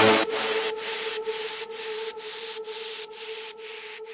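Outro of an electronic dance track: a held synth note under a pulsing noise sweep that cuts out on each beat, about two pulses a second, fading out.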